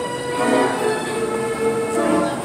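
Carousel band organ music playing, with chords of steady held pipe tones.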